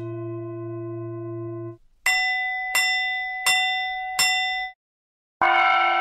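Sampled instrument notes played from a Nepali-instruments VST plugin: a held low tone lasting under two seconds, then four bell-like struck notes about three-quarters of a second apart, then a brighter sustained ringing tone starting near the end.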